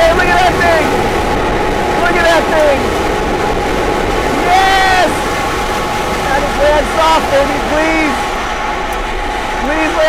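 Several people whooping and calling out in excitement over a steady low rumble from the SpaceX StarHopper's single Raptor rocket engine, heard from far off.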